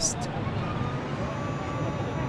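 Steady outdoor ambient noise, an even hiss with faint voices in the background.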